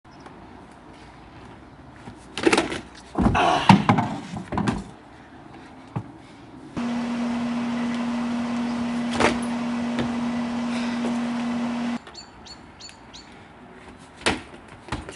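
Unicycle landing hops on a wooden deck: a few loud knocks and thumps of the tyre and pedals on the boards, about two to five seconds in. Later a steady low hum runs for about five seconds and stops abruptly.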